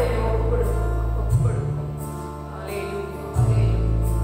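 A woman singing a Christian song into a microphone over an accompaniment of deep, sustained bass notes that change about every two seconds; her voice is strongest near the start and fainter after.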